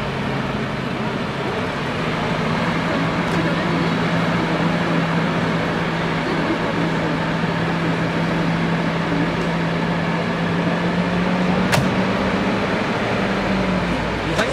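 Diesel engines of heavy loaded MAN tipper trucks running at low revs: a steady low hum over a broad roar, its pitch creeping slightly higher near the end. A single sharp click about twelve seconds in.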